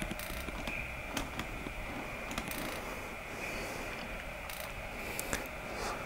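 Faint steady hiss of a quiet empty room on a handheld camera's recording, with scattered light clicks and ticks throughout.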